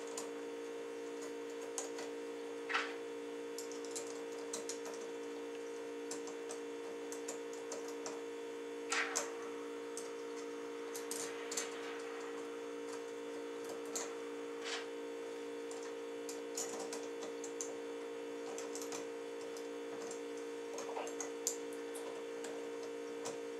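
Steady hum with scattered light clicks and ticks of small screws and metal plates being handled and fitted while a slack adjuster repair kit's four screws are installed.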